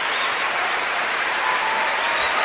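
Live audience applauding, a steady wash of clapping.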